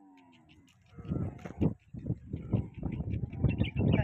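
Dromedary camels vocalizing: a run of low, rough grunts that starts about a second in and grows louder toward the end.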